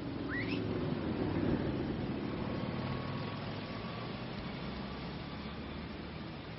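City street traffic: a passing vehicle's rumble swells about a second and a half in, then slowly eases back to a steady traffic hum. A short rising chirp sounds right at the start.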